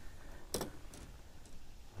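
Faint handling of a just-caught crappie as it is unhooked with hemostat forceps: one sharp click about half a second in, then a few light ticks.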